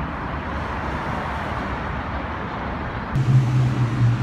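City street ambience of traffic and crowd noise, a steady even wash. About three seconds in it changes abruptly to a steady low hum.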